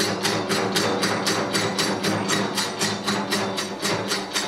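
Kagura accompaniment: a taiko drum and small metal hand cymbals struck together in a fast, even rhythm of about five beats a second.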